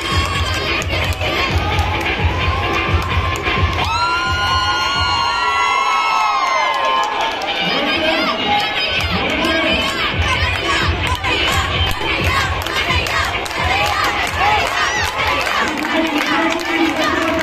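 Large crowd of schoolchildren shouting and cheering. About four seconds in, a long drawn-out call rises and then falls away in pitch over the din.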